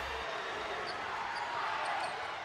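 Steady arena crowd noise from a college basketball game during live play.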